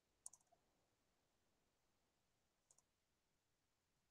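Near silence with faint computer mouse clicks: a quick cluster about a third of a second in, and a pair near three seconds.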